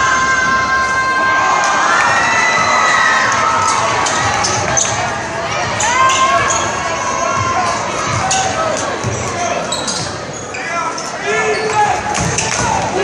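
Gymnasium crowd at a basketball game yelling and cheering, with long held voices in the first few seconds, then a basketball dribbling on the hardwood floor and sharp sneaker squeaks as play moves up the court.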